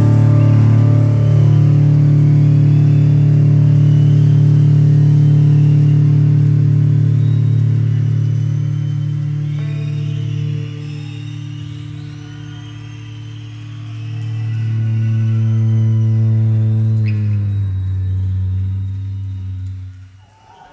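Live amplified rock music: electric guitars holding long, droning chords that dip, swell again, then fade away near the end.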